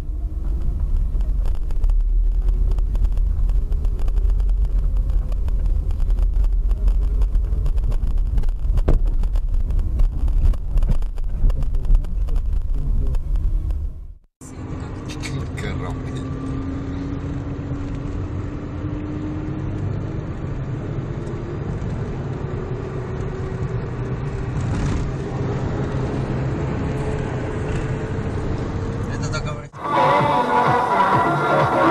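Cabin noise of a moving car heard through a dashcam microphone: a strong, steady low rumble of engine and road. About 14 s in it cuts off abruptly, and a quieter drive follows with a steady whine that slowly rises in pitch.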